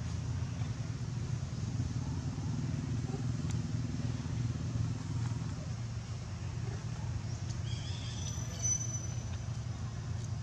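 A steady low engine rumble, like distant motor traffic, running throughout. A few brief high chirps come near the end.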